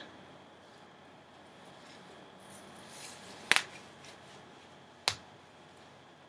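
Faint rustling of a synthetic lace front wig being pulled on over the head, with two sharp snaps about three and a half and five seconds in. The wearer takes a snap for something ripping, but not the lace.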